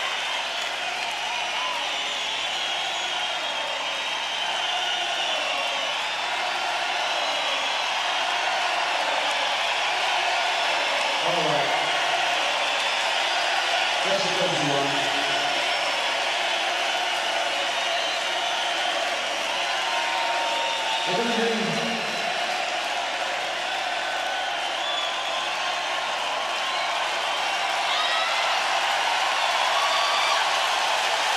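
Large concert crowd cheering and clapping in a steady din between songs. A few single voices shout out above it, about 11, 14 and 21 seconds in.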